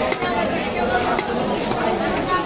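Long knife cutting fish into chunks on a wooden log block, with a few sharp knocks of the blade against the wood, over a steady chatter of voices.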